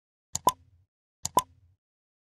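Two mouse-click sound effects about a second apart, each a quick double click ending in a short pop, as an animated cursor clicks the Like and Subscribe buttons.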